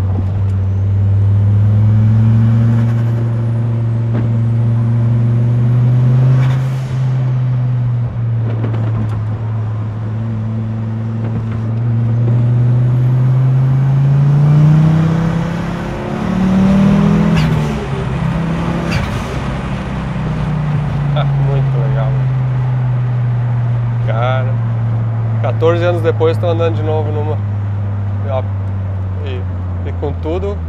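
Turbocharged car engine heard from inside the cabin while driving: its pitch climbs under acceleration in the first few seconds, climbs again more steeply to a peak around the middle, drops sharply with a gear change, then falls slowly as the car eases off. A faint high whistle rises and falls in the first few seconds.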